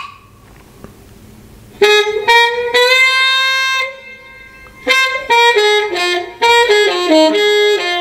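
A recorded tenor saxophone jazz lick played back slowed down from a practice app. It starts about two seconds in with a phrase built around a long held note. After a short pause comes a second phrase of quicker notes stepping downward.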